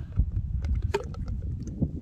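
Low wind rumble on the microphone, with a few faint light clicks as fingers pick at the inside of a cut-open plastic water-filter cartridge.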